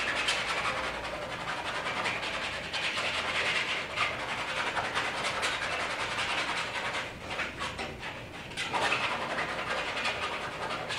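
Paint being scrubbed and scraped over a canvas in quick repeated strokes, making a continuous dry rasping with a couple of brief pauses near the end, as a muddy background patch is laid in.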